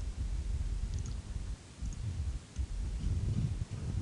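Low, steady room rumble with a few faint clicks about a second in.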